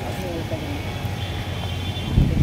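Faint distant voices over a steady low rumble.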